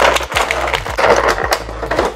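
Clear plastic packaging crinkling and crackling as an action figure is worked out of its soft plastic bag, a dense run of small rapid crackles.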